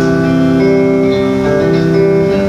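Electric guitar playing slow, held chords and single notes, each note ringing on for about half a second to a second before the next.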